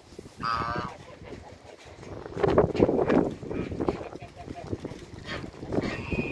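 Backyard waterfowl calling: a short, pitched honk-like call about half a second in, then a louder, rougher burst of calls around two to three seconds in, with more short calls near the end.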